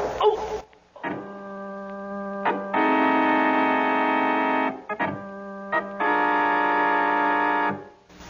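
Organ music bridge in an old-time radio drama: held organ chords, a quieter chord rising to a louder, fuller one, played twice with a short break between, then cutting off just before the end.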